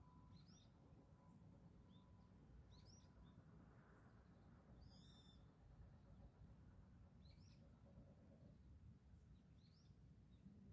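Faint, high bird chirps repeating every two seconds or so, with one different call about halfway through, over a quiet, steady low rumble.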